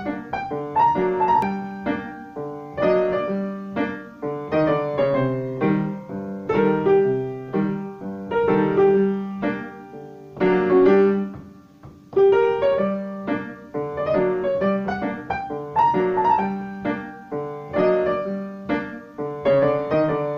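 Background piano music: a light melody of struck notes that each fade away, played in an even rhythm.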